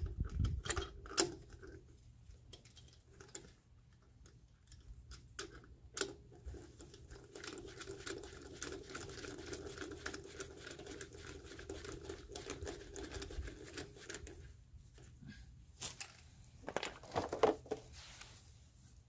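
Socket ratchet clicking in rapid runs as a locking lug nut is hand-tightened onto a wheel stud, with a few louder knocks near the end.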